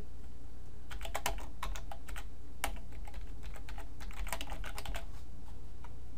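Computer keyboard typing: irregular runs of keystrokes from about a second in until about five seconds in, as PHP code is typed into a text editor.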